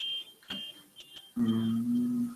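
A series of short high-pitched electronic beeps, then a steady low hum that starts about a second and a half in, lasts about a second and is louder than the beeps.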